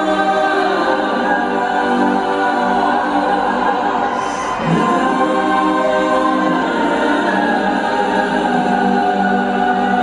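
Choir-like layered voices singing long held chords over an arena sound system, the chord shifting about halfway through.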